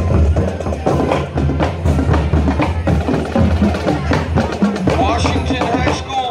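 High school marching band drumline playing a cadence: bass drums and snare drums striking in a steady rhythm, with sharp stick clicks.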